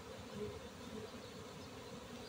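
A honeybee swarm buzzing steadily as the bees fly around the entrance of the bucket they are moving into.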